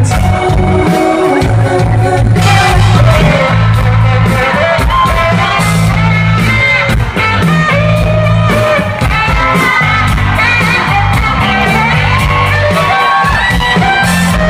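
A live rock band playing with singing: bass guitar, electric guitars, keyboard and backing vocals, loud and continuous, heard from among the audience.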